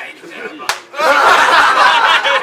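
A single sharp slap about two-thirds of a second in. About a second in, a group of men bursts into loud laughter and overlapping voices.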